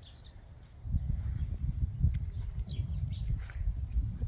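Low, gusty rumble of wind buffeting the phone's microphone outdoors, starting about a second in, with faint rustling of leaves.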